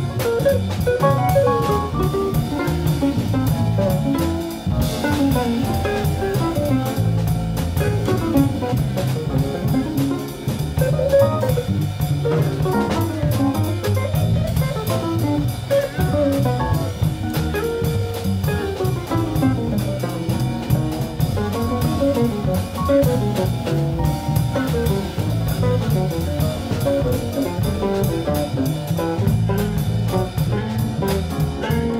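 Jazz quartet playing live: an archtop electric guitar solos in quick single-note runs over upright bass, drum kit and keyboard.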